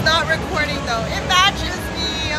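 A woman's high-pitched voice exclaiming, over the steady background noise of an arcade.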